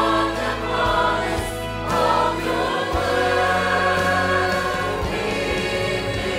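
Church choir singing a hymn in full harmony with instrumental accompaniment, voices holding long notes over a steady bass.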